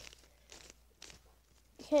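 Plastic layers of a gold puzzle cube being turned by hand: two short faint sliding scrapes, about half a second and one second in.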